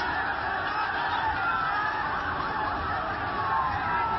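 Several vehicle sirens wailing at once, their pitches slowly gliding up and down and overlapping, over the steady din of a crowd in the street.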